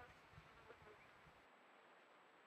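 Near silence: faint outdoor background with a faint insect buzz. A faint low rumble drops away about one and a half seconds in.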